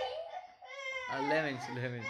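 A small child crying and whining: a short cry at the start, then a longer, strained cry from about a second in.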